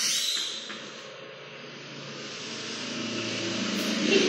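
A steady rushing noise that slowly grows louder, after a brief sharp sound at the very start.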